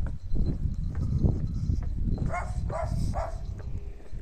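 A dog barking three times in quick succession a little past the middle, over a steady low rumble of wind and handling on the microphone.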